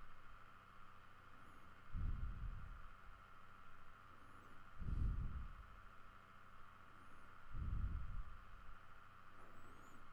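Soft low puffs of a person's breathing on a close microphone, one about every three seconds, over a faint steady hum.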